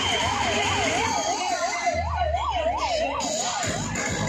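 A siren with a fast up-and-down yelp, its pitch sweeping about four times a second, over a noisy background; it dies away just before the end.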